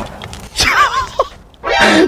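A man farting, a pitched, brassy sound, with laughter around it.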